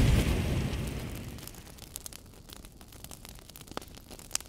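Deep boom sound effect dying away over about two seconds, leaving faint scattered crackles.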